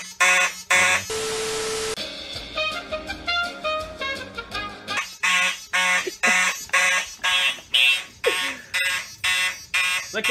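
Fire alarm horns sounding in march-time pulses, about two a second. About a second in they are cut by a second-long steady tone, then a few seconds of music with changing notes, before the pulsing horns return.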